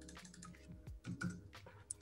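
A few faint computer keyboard clicks over quiet room tone.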